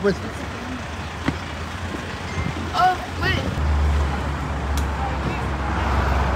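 Road traffic noise: a steady low rumble of vehicles on the road, growing louder about three and a half seconds in, with a couple of brief faint voices.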